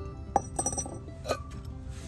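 Glazed ceramic pots clinking against each other as they are handled: one sharp clink, a quick cluster of smaller clinks, then one more clink, over background music.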